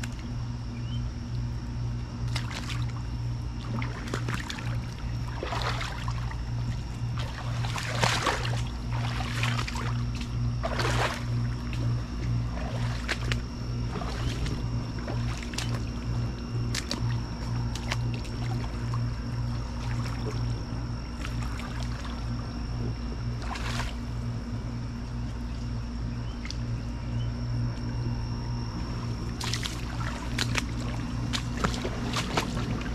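Footsteps wading through a shallow, rocky creek, sloshing and splashing irregularly every second or few. Underneath runs a steady low mechanical hum with a slight throb and a faint steady high whine.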